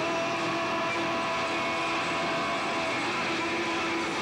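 Live rock band playing a dense, steady passage with held electric guitar notes over a loud wash of amplified sound.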